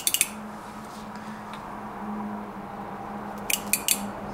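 Short clusters of sharp clicks, once at the start and again near the end, as car-battery test leads are touched to an automatic transmission solenoid and its valve moves. A solenoid that clicks when it is energized is working; a broken one makes no sound.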